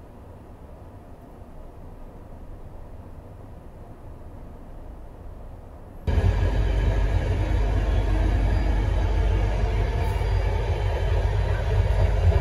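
Running noise of the Izmir Mavi Express sleeper train heard from inside the carriage: a low, steady rumble, quiet at first, then abruptly much louder and fuller about halfway through.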